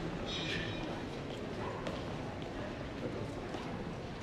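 Footsteps on a hard tiled floor, with voices in the background.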